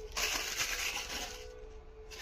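Saree fabric rustling as it is gathered up and folded by hand, loudest in the first second and then dying away.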